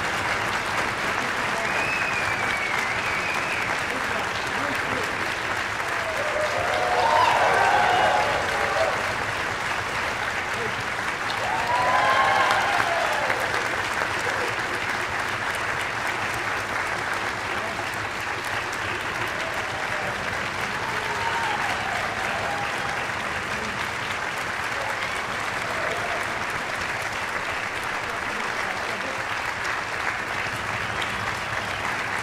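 Sustained applause from a concert-hall audience and the orchestra's players, with voices calling out over it and two louder swells, about seven and twelve seconds in.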